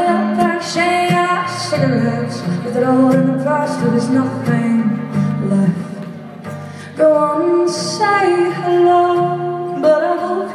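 A woman singing long, held notes over a strummed acoustic guitar, live in a room. The sound dips a little past the middle, then a fresh strum and vocal phrase come in about seven seconds in.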